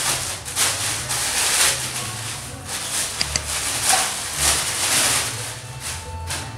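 Thin plastic bag crinkling and rustling in irregular bursts as a rubber car inner tube is unwrapped and pulled out of it.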